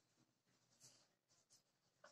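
Near silence, with faint strokes of a marker pen writing on a whiteboard.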